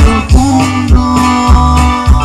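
Live band playing amplified music, with a steady bass-and-drum beat about every 0.6 seconds under held instrument notes.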